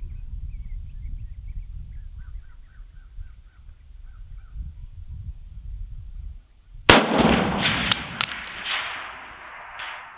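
A single .30-06 shot from an MC1 Garand sniper rifle, cracking sharply about seven seconds in and rolling away in a long echo over the range, with a couple of light metallic clinks soon after. Before the shot, the breeze rumbles low and unevenly on the microphone.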